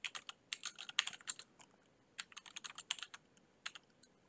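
Typing on a computer keyboard: quick irregular runs of key clicks, with a short pause a little before halfway.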